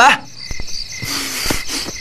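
Steady high chirring of insects in the background ambience, with a hiss filling in about halfway through.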